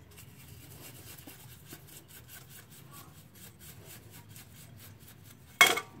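Paintbrush scrubbing the petrol-wet body of a motorcycle carburetor, a faint quick rubbing of about four strokes a second. Near the end there is one short, loud knock.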